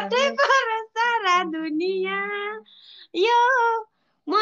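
A woman singing in a high, childlike voice: drawn-out wavering notes in three short phrases, with brief breaks about a second in and just before the last phrase.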